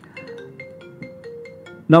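Mobile phone ringtone: a quick tune of short stepped notes, about six a second.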